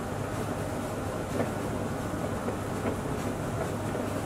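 Steady low rumble and hiss with a few faint, scattered ticks.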